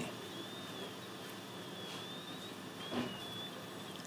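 Quiet room tone: a steady low hiss with faint high wavering tones, and one brief soft sound about three seconds in.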